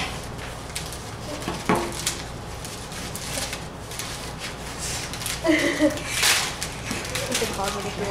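Irregular crinkling and rustling of a paper-and-foil One Chip Challenge packet being torn and opened by hand.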